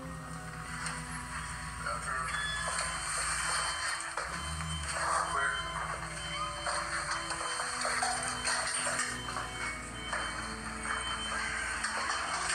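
Background music with long held tones, under indistinct voices.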